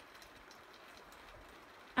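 Near silence: a faint, steady outdoor background hiss with no distinct events.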